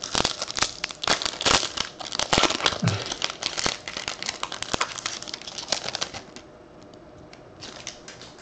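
Foil wrapper of a baseball card pack being torn open and crinkled by hand, a dense crackling that dies down after about six seconds.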